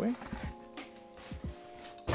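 Soft background music with steady held notes, with a few light knocks as a cardboard shipping box is moved aside.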